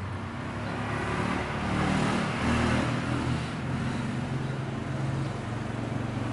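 An engine hum that swells louder over the first two to three seconds and then holds steady.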